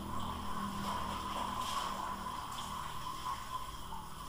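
Steady faint background hum and hiss, with no speech: the room and recording noise of a screen-recorded narration.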